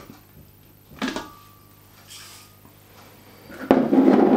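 Kitchen handling noises as porridge oats are tipped from a bowl into a glass blender jar: a knock about a second in, a soft rustle of the oats sliding in, then a louder clatter near the end.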